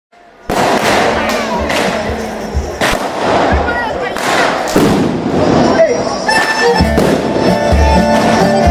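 A run of loud, irregular firecracker bangs and crackling, with voices. About six seconds in, a folk band starts playing: fiddle and a woodwind over a steady drum beat.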